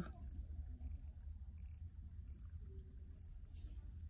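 Crown of a Winner Factor self-winding mechanical watch being hand-wound clockwise: faint, irregular ticking of the winding mechanism over a low steady hum.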